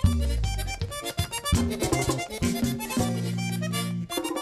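Live merengue típico band playing instrumentally. A diatonic button accordion plays quick melodic runs over driving hand percussion and bass, and the bass holds one steady note near the end.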